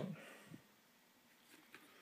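Near silence: room tone, with a few faint soft ticks, one about half a second in and a few more in the second half.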